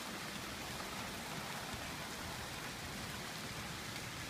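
Heavy rain falling, a steady even hiss of downpour.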